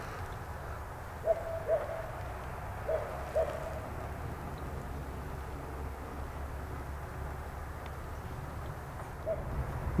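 A bird giving short hooting calls in pairs, two pairs a second and a half apart early on and a single hoot near the end, over a steady low rumble.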